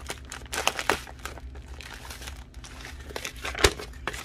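Clear plastic bags of diamond painting drills crinkling as they are handled, in short irregular crackles, with one sharper, louder crackle near the end.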